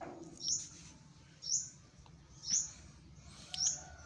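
A bird chirping: four short, high chirps about a second apart.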